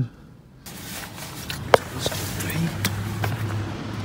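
Traffic on a wet road: tyres hissing on the wet surface, with a low engine hum in the second half and a single sharp click just under two seconds in.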